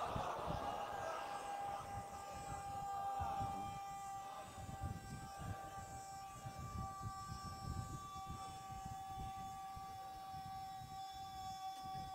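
Crowd noise fades out in the first second, giving way to a faint steady tone held at one pitch throughout, over a low irregular rumble and rustle of the seated crowd.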